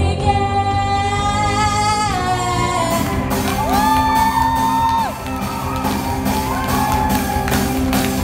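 Live rock band with a lead singer: a long held sung note over sustained chords, then the drums and cymbals come in about three seconds in, and the singer holds another long note that slides up into it and drops away at its end.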